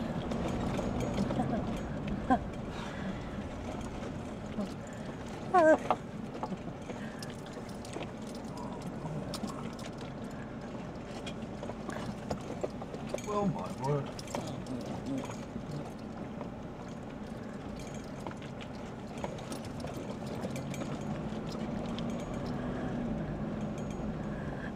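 Four-wheel-drive vehicle driving on a rough unsealed dirt road, heard from the cab: steady low road rumble with frequent knocks and rattles as it goes over the bumps.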